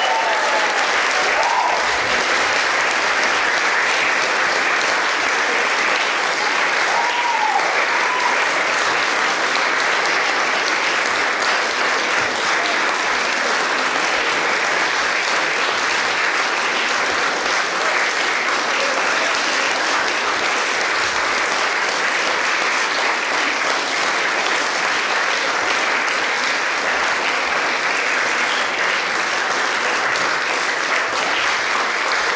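Audience applauding steadily, without letting up, at the end of a live performance.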